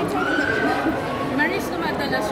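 A woman's high-pitched laugh: one long squeal of laughter over the first second, then shorter rising bursts of it near the end, over background crowd chatter.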